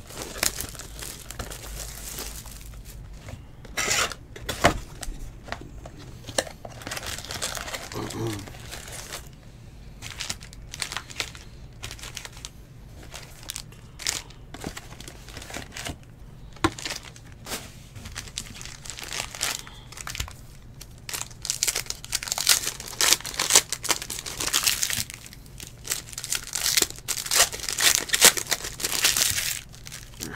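Foil 2018 Panini Select football card packs crinkling as they are handled and the cardboard hobby box is torn open, with scattered sharp clicks and rustles. The crinkling grows denser and louder in the last several seconds.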